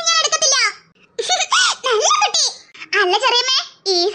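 High-pitched cartoon children's voices laughing and giggling in several bouts.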